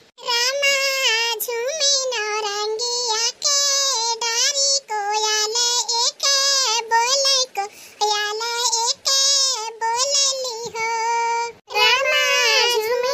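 A high-pitched cartoon character's voice singing a song, held and bending notes in phrases with short breaks between them.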